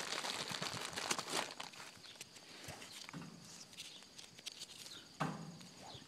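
Rustling with light clicks and taps from hands working around a wire cage trap while laying marshmallow bait. The noise is busiest for the first second and a half, then thins to scattered rustles, with one sharper sound near the end.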